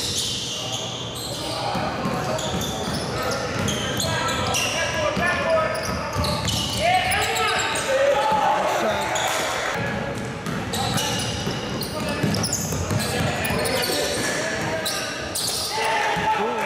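Basketball game in a gym: a basketball bouncing on the hardwood court with players and spectators shouting and chattering, echoing around the large hall. The voices swell about six seconds in.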